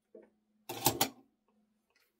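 Metal scissors handled on a cutting mat: a short clatter with two sharp clicks close together about a second in.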